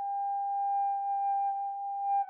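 Unaccompanied saxophone holding one long high note with a pure, nearly overtone-free tone.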